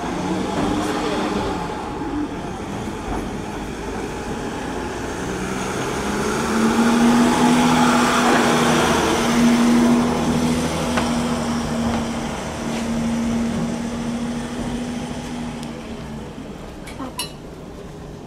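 Mercedes-Benz Sprinter van's engine running as it drives slowly past at walking pace, a steady hum that grows louder as it draws level about halfway through and fades as it moves off, over crowd chatter.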